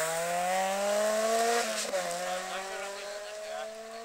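Rally car engine accelerating hard past, its pitch climbing, then a brief drop at a gear change just under two seconds in before it climbs again and fades as the car pulls away.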